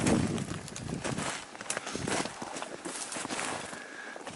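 Footsteps in snow: a run of uneven steps as someone walks through brushy woods.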